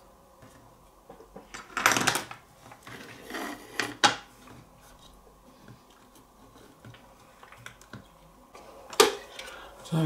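Plastic speaker housing parts handled on a cutting mat: a brief scraping clatter about two seconds in, a few light knocks around four seconds, and one sharp click near the end.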